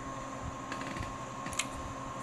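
Steady electrical hum and hiss from running bench equipment, with a thin steady high whine, and two light clicks in the second half.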